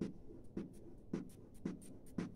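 Chalk on a blackboard as a row of zeros is written, heard as a quick string of about half a dozen short taps and scrapes, one for each stroke of the chalk.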